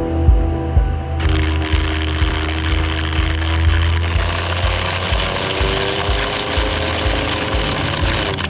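Flood coolant spraying inside a CNC lathe while a carbide boring bar finish-cuts the bore of a Nitronic 60 stainless steel part. A loud, steady hiss starts about a second in, under background music with a steady beat.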